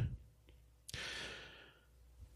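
A man's single breath close to the microphone, about a second in and lasting about half a second, just after a small click.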